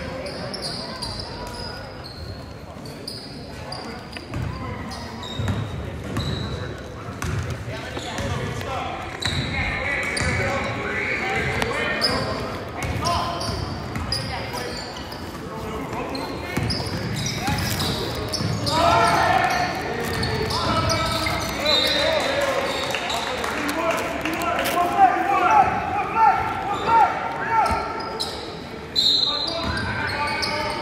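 Basketball being dribbled on a hardwood court in a large gymnasium during live play, repeated knocks of the ball, with players and spectators calling out, the voices louder in the second half.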